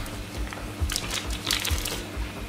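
Sealed plastic microchip packets crinkling as they are handled against a scanner, in two short bursts about a second in and near the end, over background music with a steady low beat.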